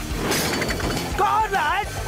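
Cartoon crash sound effect with glass shattering, about a quarter-second in, followed by a wavering cry near the end.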